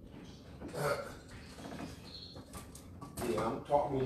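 An indistinct person's voice, heard briefly about a second in and again more loudly near the end, with a few faint knocks in between.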